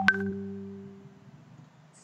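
A sharp knock right at the start, followed by a ringing tone of a few pitches that fades away over about a second and a half: a single strike on something that rings.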